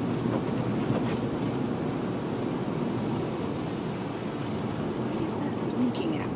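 Steady low road and engine noise inside the cabin of a moving vehicle.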